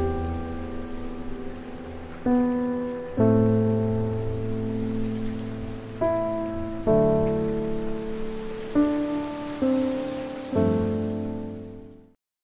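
Background music of slow, soft piano-like chords, a new chord struck every one to two seconds and dying away, over a faint rain-like hiss. It cuts off suddenly at the end.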